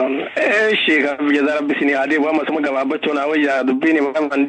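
A man's voice speaking continuously, without pause.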